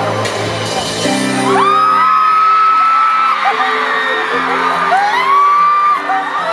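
Live pop band playing a song's intro, heard from within the crowd: held chords that shift every second or so. Fans' high screams and whoops ride over it, one about a second and a half in and another near the end.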